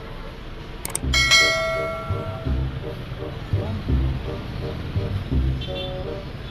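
Background music with a steady beat. About a second in, a short click is followed by a bright bell chime that rings out and fades, a subscribe-button sound effect.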